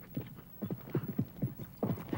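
Horse hooves clip-clopping: a quick, uneven run of hoofbeats.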